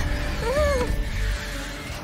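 A cartoon vehicle character's short, squeaky whimper that rises and falls in pitch, about half a second in, over a low rumble and background music.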